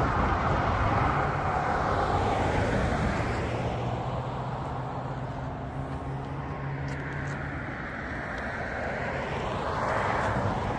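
Street traffic: a vehicle going by and fading over the first few seconds, a low steady engine hum through the middle, and another vehicle approaching near the end.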